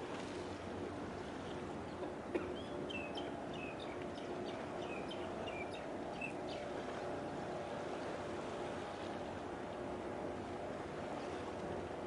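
A bird calls in a quick run of short, high, falling chirps for about four seconds, starting a couple of seconds in. Underneath is a steady low hum with wind and water noise, and a single sharp click comes just before the chirps.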